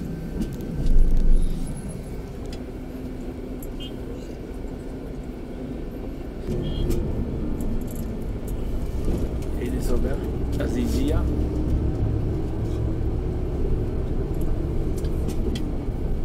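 Bus engine and road rumble heard from inside the cabin, with a brief loud thump about a second in. The rumble grows louder from about six and a half seconds in and stays up.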